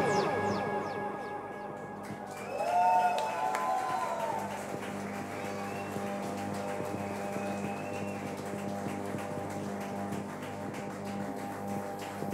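The end of a live band's song: after the last chord stops, sustained guitar and synthesizer notes keep ringing and slowly fade, with a brief tone that slides up and back down about three seconds in.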